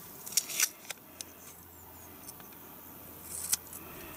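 Masking tape pulled off its roll and snipped with scissors: a few short crackles and snips about half a second in and again shortly before the end.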